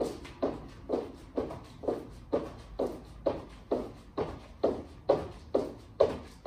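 Feet landing on a wooden floor in a steady run of jumping jacks, about two landings a second.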